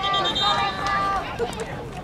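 Voices calling out across a field hockey game, with one long drawn-out high yell in the first second, over outdoor background noise.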